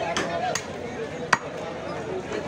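Butcher's cleaver chopping beef on a wooden log chopping block: three sharp strikes, the one just over a second in the loudest.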